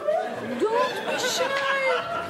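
A woman talking in the drawn-out, gliding tones of speech, with no other sound standing out.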